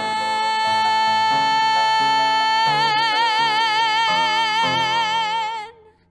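A woman singing one long, high held note over an instrumental accompaniment. The note is held straight at first, then takes on vibrato about halfway through, and cuts off shortly before the end.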